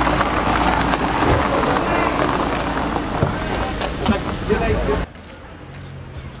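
Indistinct outdoor voices over a loud, low rumbling noise, which cuts off suddenly about five seconds in.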